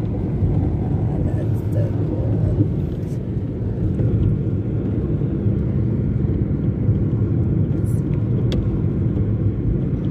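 Steady low road and engine rumble heard from inside a moving vehicle, with a brief sharp click about eight and a half seconds in.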